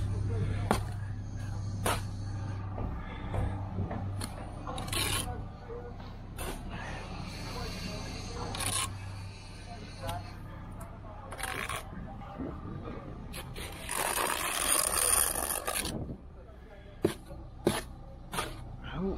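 A steel brick trowel scraping and tapping as it scoops sand-and-cement mortar off a spot board and spreads a mortar bed along a brick course, with scattered sharp knocks. A louder two-second rush of noise comes about fourteen seconds in.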